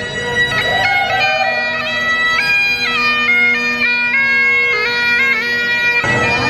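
Bagpipes playing a tune: a steady drone held underneath while the chanter steps from note to note in a lively melody.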